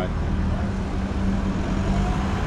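Steady low drone of road traffic, a motor vehicle engine running with a constant hum.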